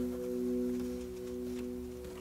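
Last chord of an acoustic guitar ringing on and slowly fading away at the end of the song.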